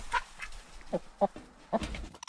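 A hen in the nest box giving about four short, soft clucks, several dropping in pitch, just after laying an egg.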